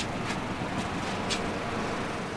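Steady background noise with a few faint clicks, the sound of a camera being handled as it swings around.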